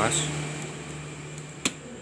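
One sharp click about one and a half seconds in, as the small cooling-fan cable plug is pulled from its socket on a Dell Inspiron N4050 motherboard. Under it runs a steady low hum with hiss.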